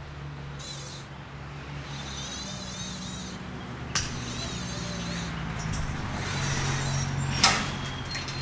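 Coiled steel wire liner of a Lincoln Electric SP-135 Plus MIG gun being drawn out of the gun cable in about four pulls, each a wavering metallic scraping hiss, with a sharp click about halfway and another near the end. A steady low hum runs underneath.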